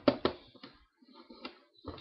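Handling noises: two sharp knocks at the start, then softer scraping and rustling as things are moved about, and another knock just before the end.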